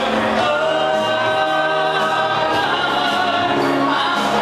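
Two male vocalists singing live into microphones with musical accompaniment, holding long sustained notes.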